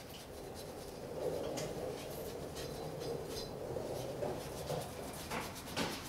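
Rust and road grime being scrubbed by hand off a car's bare steel front wheel hub: quiet, uneven scratching and rubbing.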